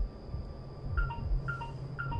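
Child's electronic toy beeping by itself: a short two-note beep, high then lower, sounds three times about half a second apart, starting about a second in. A low, evenly repeating thump runs underneath.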